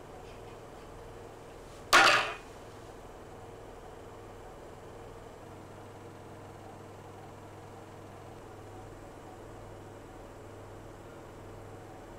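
A single sudden whoosh about two seconds in that dies away within half a second, over a steady low hum of room tone.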